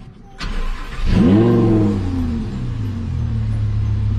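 Lamborghini Huracán LP610-4's V10 starting through a catless Fi Exhaust valvetronic system. There is a brief crank about half a second in, then the engine catches with a flare of revs about a second in. It then settles into a steady idle.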